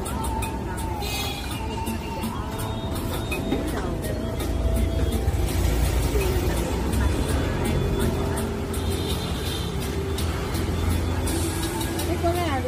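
Busy street ambience: a steady low rumble of road traffic, with people talking and music playing in the background.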